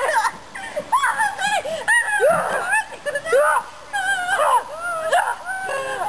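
High-pitched children's squeals and yelps, rising and falling sharply in pitch, with no clear words.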